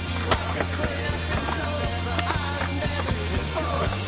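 Soundtrack music with a steady bass line and beat, with skateboard sounds mixed in: wheels rolling and sharp clacks of the board. The loudest knock comes about a third of a second in.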